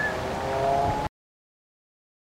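A steady engine hum with a slightly rising pitch over outdoor background noise, cut off abruptly about a second in, followed by dead silence.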